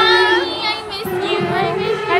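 A high voice singing, with sustained, gliding notes.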